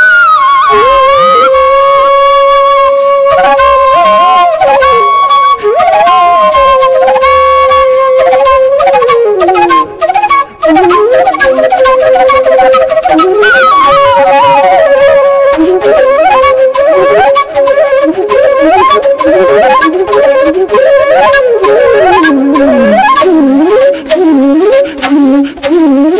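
Background music: a solo flute playing a slow melody of long held notes, with gliding pitches and quick ornamented runs.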